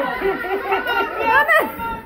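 Several people's voices chattering.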